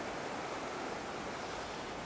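Steady, even rush of a shallow river running over stones and riffles.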